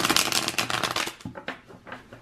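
A tarot deck being shuffled by hand: a dense run of rapid card clicks for about the first second, thinning to a few scattered clicks.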